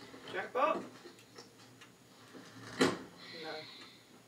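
Voices from a television drama playing in a small room, with a sharp click about three seconds in.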